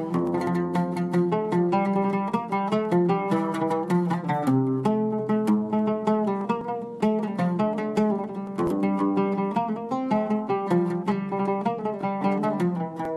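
Solo oud played with a plectrum: a quick, continuous run of plucked notes in a traditional melody.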